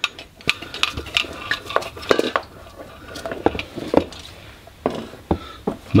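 Irregular metal clicks and knocks of hand tools being handled at a clutch slave cylinder bleed nipple, with a ratchet spanner and a bleeding-tool hose in place.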